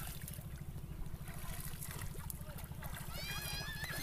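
Faint water sloshing around a wooden rowboat being poled on a river, over a low steady rumble. A distant high-pitched voice calls out near the end.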